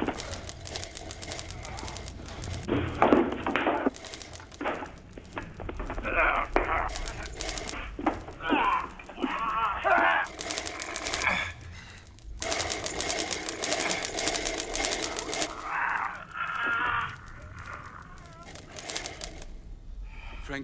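Hand-cranked silent-era film camera clattering rapidly as it films, with wordless gasps and groans from people being attacked. The clatter breaks off briefly about halfway through.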